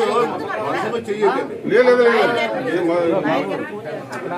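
Several people talking over one another at once: a hubbub of overlapping voices.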